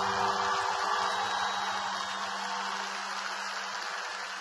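Audience applauding, the clapping slowly dying down, while a last held note of the music fades away beneath it.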